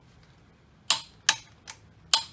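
Long-handled socket wrench with a three-quarter-inch socket working a wheel's lug nuts: three sharp metallic clicks, about two or three a second, starting about a second in.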